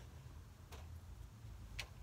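Faint room hum with a few soft, separate clicks about a second apart.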